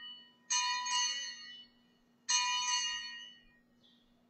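Altar bells rung at the elevation of the consecrated chalice. The ring struck just before is dying away at the start, then two more rings come, about half a second in and just after two seconds, each sounding bright and fading over about a second.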